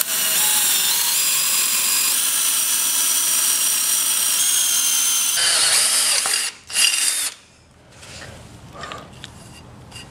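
Cordless drill running at speed with a high whine as its bit bores a hole through the side of a metal scooter deck. It stops about six seconds in, and gives one short burst about a second later.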